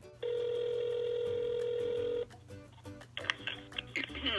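Telephone ringback tone coming through a smartphone's speaker while an outgoing call rings: one steady two-second ring, then it stops. Near the end, sounds come over the line as the call is answered.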